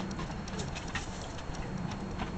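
Scattered, irregular light clicks of dogs' claws on wooden deck boards, over a steady low hum.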